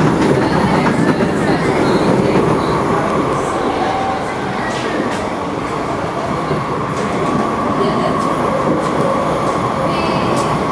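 SMRT C751B metro train heard from inside the car while running at speed: a steady rumble of wheels on rail with a steady whine running through it. A few light clicks come in the middle.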